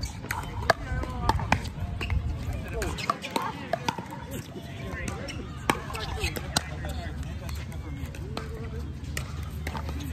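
Pickleball paddles striking a plastic pickleball: sharp pops at irregular intervals through the play, with people talking.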